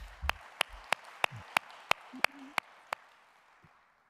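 Audience applauding: one pair of hands claps sharply about three times a second over a softer spread of clapping, and the applause fades away after about three seconds.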